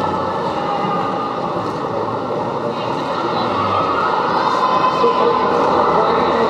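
Quad roller skate wheels rolling on a hard sports-hall floor, a steady rumble mixed with the voices of a crowd in a large hall, growing a little louder toward the end.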